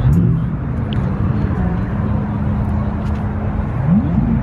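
A car engine idling with a steady low rumble and a level hum, amid faint voices of people standing around.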